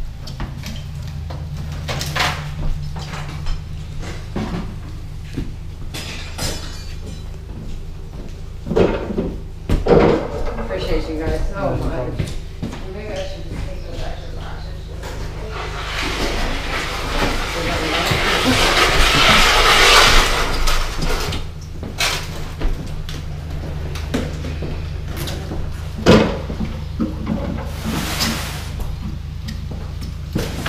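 Scattered knocks and bangs of household belongings being handled and carried out, with faint voices, over a steady low hum. A louder rushing noise builds in the second half and cuts off near two-thirds of the way through.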